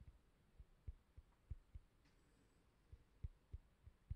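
Near silence broken by about a dozen faint, irregular low thumps.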